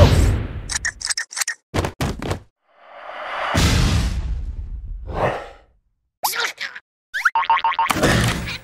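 Cartoon sound effects: a string of quick comic boings and clicks, then a rushing burst lasting about three seconds as a cocoon bursts open in a puff of dust, then a quick rattling run near the end.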